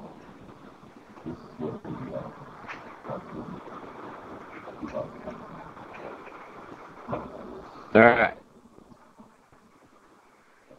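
Indistinct background talk from people in the room, low and broken, with one short, loud vocal sound about eight seconds in.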